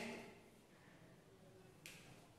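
Near silence: faint room tone, with one short click near the end.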